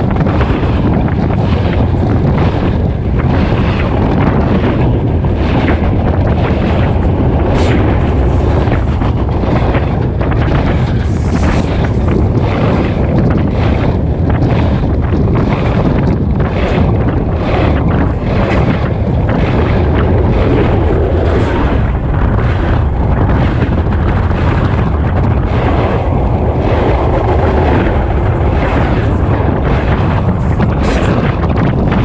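Freight train cars rolling directly over a microphone set between the rails: a loud, unbroken rumble and rush of air, with frequent sharp clacks as the wheelsets pass over the rails.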